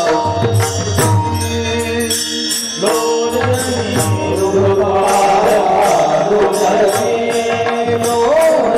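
Devotional kirtan music: singing over held, steady instrumental notes, kept in time by sharp cymbal strikes about two a second, with a low drum underneath.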